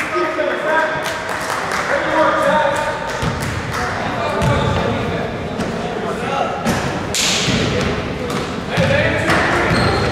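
Spectators talking in a gym, with a basketball bouncing on a hardwood court and scattered thuds and knocks from play.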